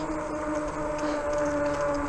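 Steady whine of a RadRover fat-tire e-bike's rear hub motor while riding, over a low rumble of the fat tires rolling on pavement.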